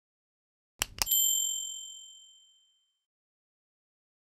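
Subscribe-button animation sound effect: a quick double click, then a bright bell ding that rings and fades away over about a second and a half.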